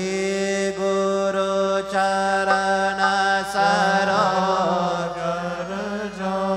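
A man's voice chanting a Hindu mantra in long, steady held notes, the vowel changing about four seconds in.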